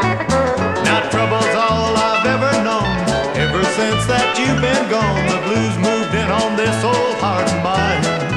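Instrumental break of a 1970s country song: a bass line stepping on the beat under steady drums, with a lead instrument playing sliding notes.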